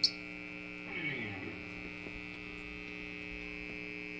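Steady electrical mains hum and buzz from the stage's guitar amplifiers and PA, with a faint falling glide about a second in.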